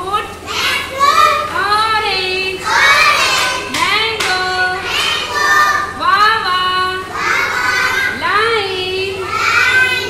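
A woman and a group of young children singing a children's action song together.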